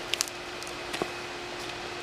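Hands pressing and rustling in mulch-covered garden soil while planting slips: two quick sharp clicks near the start and another about a second in. A faint steady hum runs underneath.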